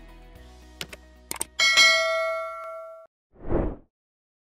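Subscribe-button sound effects over fading background music: a few quick clicks, then a bright bell ding that rings for about a second and a half before it is cut off. A short whoosh follows near the end.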